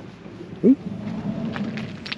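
A Peugeot Boxer van's sliding side door is unlatched and slid open, with one brief, sharp sound about two-thirds of a second in.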